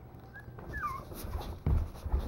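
Maltese puppy whimpering in short high squeaks while wrestling with its littermates, the cry wavering up and down. A low thump near the end.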